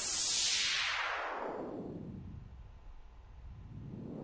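Synthesized noise through an automated parametric EQ band, making a filter sweep that falls from a hiss to a low rumble over about three seconds and starts rising again near the end. Automated panning moves it from the left to the right.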